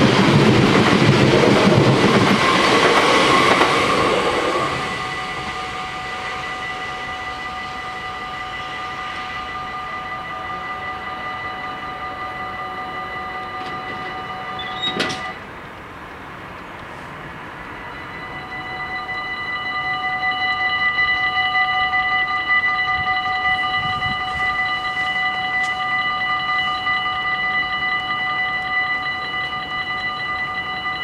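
A train passes close by in the first few seconds, its noise dying away. Then the level crossing's warning bells ring steadily and cut off with a click about halfway through as the crossing opens. A few seconds later the bells start again, louder, as the crossing closes for the next train.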